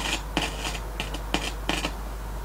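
Short crackles and pops from a loudspeaker driven by a single-tube amplifier stage as a wire is touched to the tube's grid, about eight brief bursts over a low hum. The noise coming through the speaker shows the stage is amplifying.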